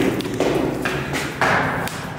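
Footsteps on a hard floor, a regular walking pace of about two steps a second.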